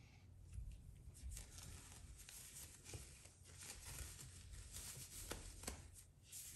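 Faint, irregularly spaced single clicks from the Pudibei NR-750 Geiger counter's clicker over near silence, a handful across a few seconds. The sparse rate matches the background-level reading of about 0.13 µSv/h, with the americium-241 from the smoke detector not yet registering.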